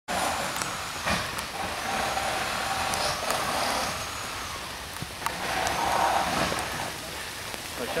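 Muffled, indistinct voices over a steady outdoor rumble, with a few light clicks.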